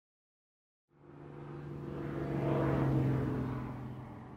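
Silence for about a second, then an airplane engine humming: a steady low drone that fades in, swells to its loudest about three seconds in and eases off a little.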